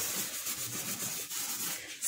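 A hand scrubbing a soapy gas-stove burner cap, a faint, irregular wet rubbing and scraping as the grease and burnt-on grime are worked off.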